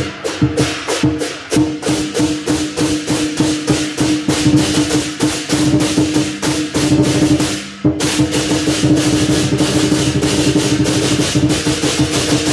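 Chinese lion dance percussion: a drum beaten in a steady rhythm with clashing hand cymbals and a ringing gong. The beat breaks off briefly about two-thirds of the way through, then comes back faster.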